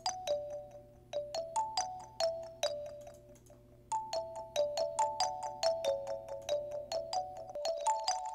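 Music: a short looping melody of bright, bell-like synth notes, each struck sharply and fading quickly. The notes repeat as echoes through a ping-pong delay, thin out in the middle and come back denser. A low steady tone sits underneath and stops shortly before the end.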